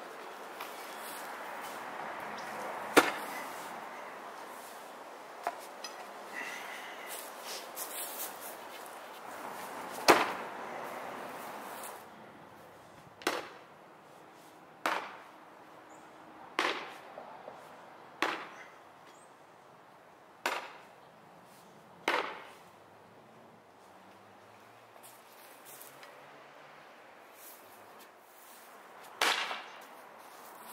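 Steel spear point thrown and stabbed into a wooden target of end-grain blocks: a series of sharp wooden thuds. The two loudest come about three and ten seconds in, then six hits follow about every one and a half to two seconds, and one more comes near the end.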